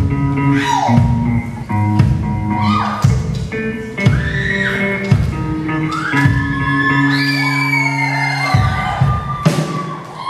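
Live rock band playing amplified electric guitars, bass and drums, the chords changing about once a second over a steady bass line. High sliding notes rise and hold above the band.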